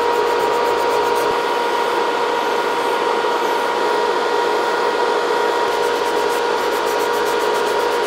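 Electric nail drill and table dust-collector fan running steadily while acrylic or gel nails are filed: an even whir with a constant humming tone.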